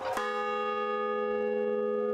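Large bronze bell struck once, ringing on with a steady hum of several tones held together.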